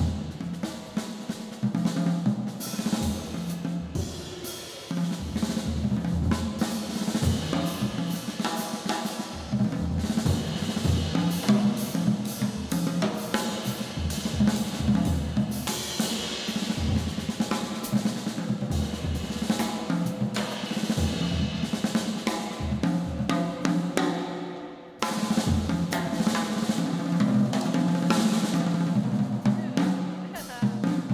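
Jazz drum kit solo played with sticks: busy, continuous strokes on snare, toms and bass drum under a wash of cymbals, with a brief drop near the end before the drumming comes back in loud.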